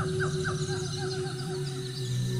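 A bird calling a rapid series of short, falling chirps, about four a second, fading away within a second and a half. Under it is a steady, low, held music tone.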